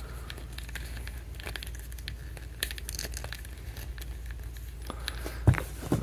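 Faint clicks and rubbing of fingers handling a plastic action figure, seating a soft plastic knee pad on its leg, with one louder knock near the end.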